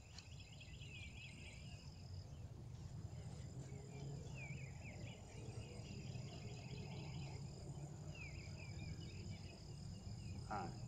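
Faint outdoor ambience: a steady high-pitched insect trill, with three short warbling bird song phrases, near the start, in the middle and near the end.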